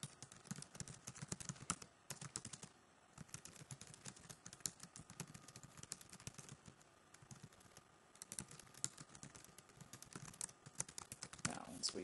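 Typing on a computer keyboard: runs of quick keystrokes, with short pauses about three seconds in and again near eight seconds.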